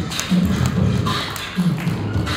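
Beatboxing into a handheld microphone: mouth-made low kick-drum thumps and sharp snare-like clicks in a steady beat.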